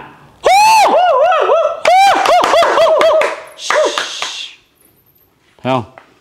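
A man's loud, high-pitched wavering call, its pitch swooping up and down several times for about three seconds, followed by a short hiss, made to rouse roosting bats.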